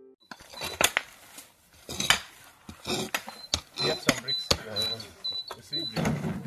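Spade and hoe blades digging into garden soil: irregular sharp knocks and scrapes. In the second half a short high note repeats about twice a second.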